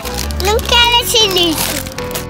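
A child's voice over background music.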